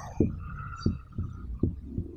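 Marker writing on a whiteboard: a faint thin squeak from the tip, with four or five soft thumps as the strokes land on the board.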